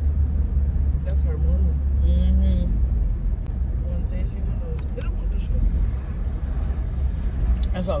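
Steady low rumble of a car interior. A soft hum or murmur of a voice comes about a second in, and a few light clicks follow.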